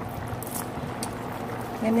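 Chicken and ginger braise simmering in a stainless steel pot, its reduced, thickened sauce bubbling steadily with a few small pops.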